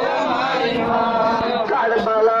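Men's voices chanting a noha, a Muharram mourning lament, in a held, sung line.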